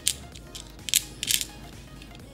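A few short clicks and scrapes of small nail-art flower charms being handled and set down on a compact mirror's hard lid, the loudest about a second in.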